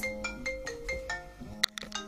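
A mobile phone ringtone playing a short melody of separate, sharply struck notes.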